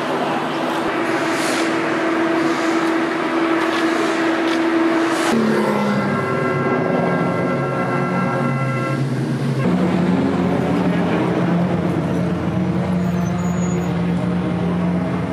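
Race car engines running at idle, a steady engine drone with mechanical noise. The pitch and character change abruptly twice, about five seconds in and near ten seconds, as the sound jumps between shots.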